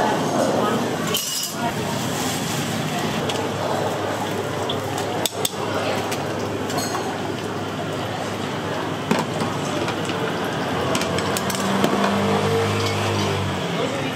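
Busy food-stall kitchen noise: a steady background of voices with a few sharp clinks of metal utensils against bowls and pans. A low hum comes in near the end.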